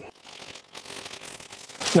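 Clear plastic packaging bag crinkling softly as it is handled and pulled off.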